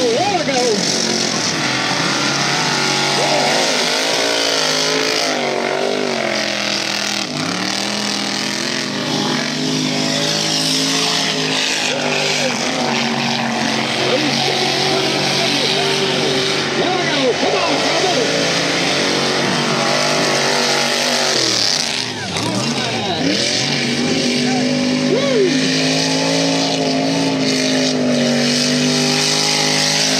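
Off-road race truck engine revving hard through a run on a dirt track, its pitch climbing and dropping again and again as the driver accelerates and lets off, with a short dip about two-thirds of the way in.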